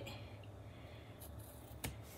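Faint cutting and scraping of a craft knife trimming washi tape on a thin wooden spoon, with one sharp click near the end.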